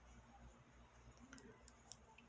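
Near silence, with a few faint, light clicks in the second half from a steel crochet hook working cotton thread into stitches.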